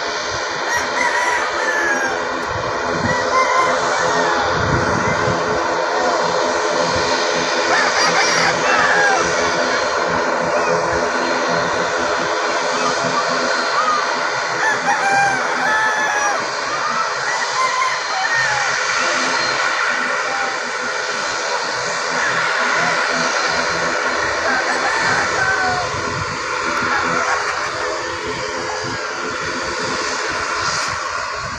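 Chickens clucking and a rooster crowing several times, over a steady, even hum from a distant Cebu Pacific ATR 72 turboprop airliner taxiing on the runway.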